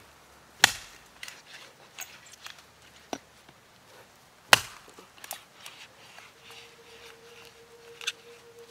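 Mora Outdoor Axe, a small camp hatchet, chopping into a chunk of apple wood: two sharp strikes about four seconds apart, with small cracks and ticks of the wood between them.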